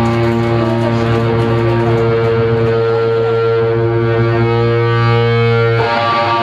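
Distorted electric guitar holding one chord through an amplifier, a steady drone that rings on unchanged for several seconds. It breaks into a new chord just before the end.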